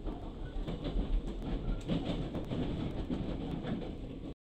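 Running noise inside a moving train carriage: a steady low rumble with scattered clicks of the wheels over the rails.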